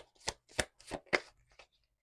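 A deck of oracle cards being shuffled by hand: a run of sharp card slaps about three a second, fading out about a second and a half in.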